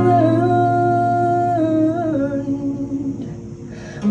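A woman singing live with her acoustic guitar, holding one long note that steps down in pitch about halfway through, over a ringing chord. Voice and guitar fade away toward the end.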